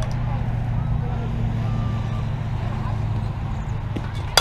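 A steady low hum, like an idling engine, runs under faint, scattered voices of distant players and spectators.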